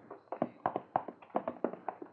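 Footsteps sound effect of two people walking in: a quick, uneven run of light taps, about five a second.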